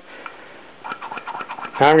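Faint scattered clicks and rustling from handling a hand-held vacuum pump and its hose on a supercharger bypass valve, ahead of the pumping, with a man's voice starting near the end.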